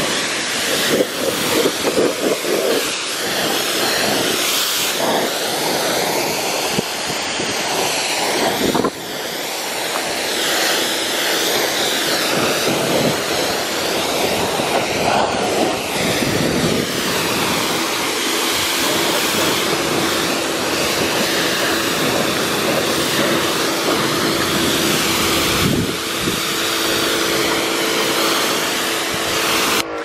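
Electric pressure washer spraying water over a car's paint: a loud, steady hiss of spray that breaks off briefly twice, with the washer's motor hum joining about a third of the way in.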